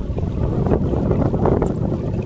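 Wind buffeting the microphone out on open water, a steady low rumble.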